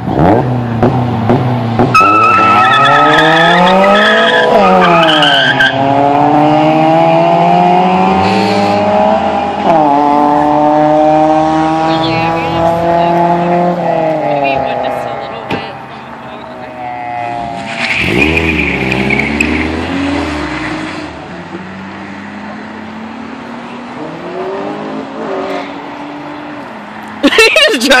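Street-racing cars accelerating hard, engines revving up and down in pitch, with tire squeal early on and again past the middle. The engine noise is loudest in the first half and falls off after about sixteen seconds.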